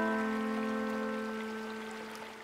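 A piano chord dying away slowly, its lowest note ringing longest, over a faint wash of flowing stream water.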